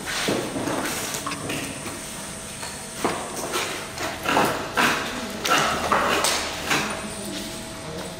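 Indistinct voices echoing in a large hall, with a few knocks and clatter; the sound comes in bursts that are busiest in the second half.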